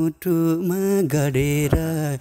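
A man singing a Nepali song unaccompanied, in long held notes with brief breaths between phrases.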